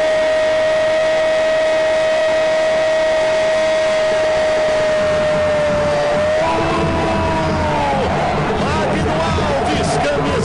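Brazilian TV football commentator's drawn-out goal shout, a long "gooool" held on one steady pitch for about six seconds, then a second, higher held call, after which excited shouting follows.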